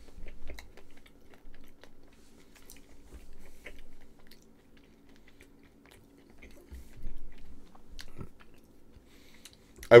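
A man chewing a soft chocolate brownie with his mouth closed: faint scattered wet clicks and soft mouth noises.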